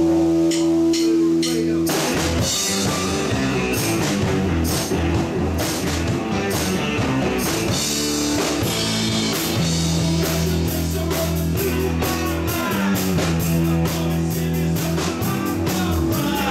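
Live rock trio of electric guitar, bass guitar and drum kit playing power pop. A chord rings out held for about the first two seconds, then the full band comes in with drums and driving guitar.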